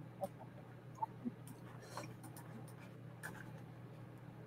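Faint scattered clicks over a steady low hum, with a few brief faint blips.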